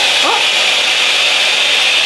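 Revlon One Step Blowout Curls hot-air curling wand running, its fan giving a steady, even whoosh of blowing air.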